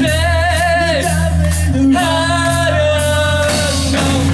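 Live rock band playing, the male lead singer holding two long notes with vibrato over sustained bass and guitar.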